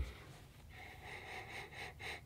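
Faint sniffing by a man smelling a running shoe held up to his nose, starting about a second in.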